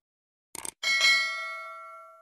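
Subscribe-button animation sound effect: a quick double click about half a second in, then a bright bell ding that rings on and slowly fades.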